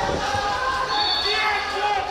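Voices in a large sports hall, with a dull thud just after the start.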